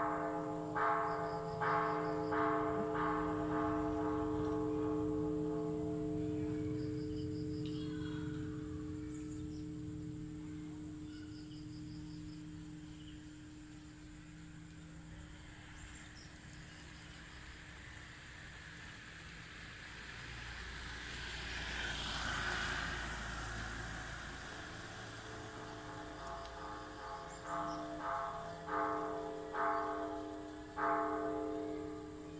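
Bell-like music: a run of struck, ringing notes about one a second over a steady low drone, fading away after the first few seconds and coming back near the end. Around two-thirds of the way in, a vehicle passes, rising and then fading.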